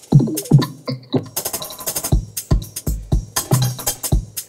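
Electronic garage drum loop at 120 BPM playing through the Molekular multi-effect in Reaktor, with regular kick hits and busy hi-hats. A few falling, pitched effect tones sound just after the start.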